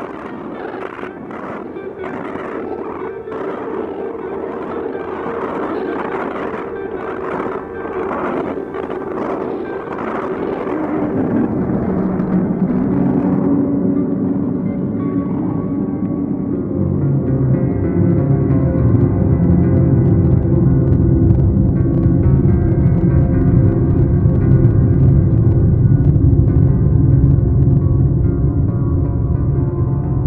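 Experimental improvised music for laptop electronics and guitar: a pulsing texture over a held tone, which about eleven seconds in gives way to a deep drone that swells louder.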